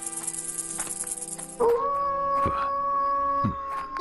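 Background music under a long, drawn-out wolf howl that starts about a second and a half in and sinks slightly in pitch, the pursuers' wolves closing in. Before it, a high, rapid chirring stops abruptly.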